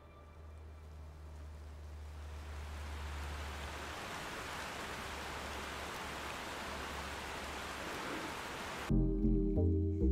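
Rain hiss swelling up over a low held drone, both from a music video's soundtrack. The drone fades out about four seconds in. Near the end a pop song's bass and beat start suddenly and loudly.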